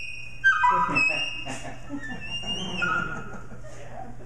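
EVI (electronic valve instrument, a wind synthesizer) playing a melody of high, held notes that run quickly downward about a second in and then step back up.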